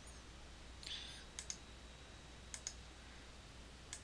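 Faint computer mouse clicks, mostly in quick pairs: one pair about a second and a half in, another just past halfway, and a single click near the end. A brief, faint, high rustle comes just before the first pair.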